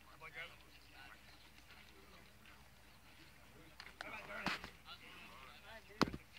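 Faint, scattered voices of people talking, with a single sharp knock about four and a half seconds in and another click right at the end.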